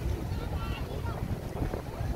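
Wind buffeting the microphone, a steady low rumble, with faint voices talking in the background.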